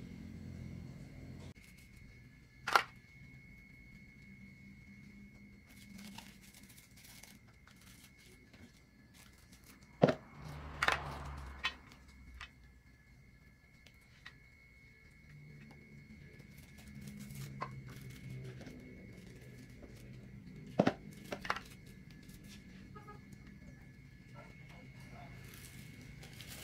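Thin plastic ice-pop bags crinkling and rustling as they are twisted and knotted by hand, with a few sharp clicks spread through.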